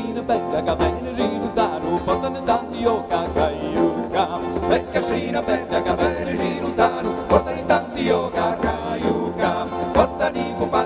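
Live folk band playing traditional Italian music: strummed acoustic guitars, electric bass and violin in a quick, steady rhythm.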